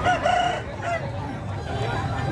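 A rooster crows once, a short crow in the first second, over the low murmur of a crowd.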